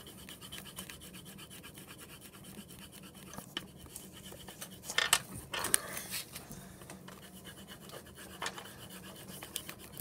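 A coloring tool scratching and rubbing across paper in short strokes, with a few sharper scrapes about five to six seconds in and again near the end.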